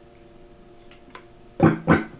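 Peerless ES-345 semi-hollow electric guitar with its Varitone switch on setting one: a faint held note rings, then two loud strummed strokes come near the end.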